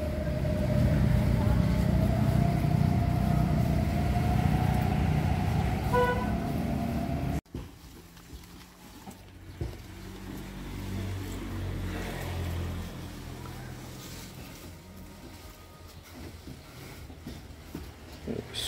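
Motor vehicle engine running with a steady, slowly rising whine, and a short horn toot about six seconds in; then the sound cuts off abruptly to a much quieter low background.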